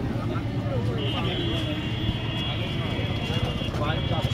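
A motor engine running with a steady low rumble, together with street noise and faint voices. A steady high-pitched tone comes in about a second in and holds for nearly three seconds.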